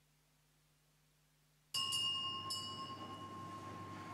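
A small metal bell struck about three times in quick succession, a little under halfway in. Its clear tone rings on after the strikes, breaking a near-silent room.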